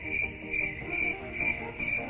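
A cricket chirping steadily, about four high-pitched chirps a second, over soft background music.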